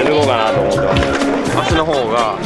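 Skateboards rolling and knocking on a concrete skatepark, with several sharp clacks, under background music and voices.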